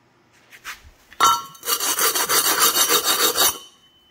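A bent metal tube rubbed rapidly back and forth against a concrete floor, a quick run of rasping strokes, about five or six a second, lasting a little over two seconds. It scuffs a marking line along the middle of the bend, the guide for cutting the bend in half lengthwise.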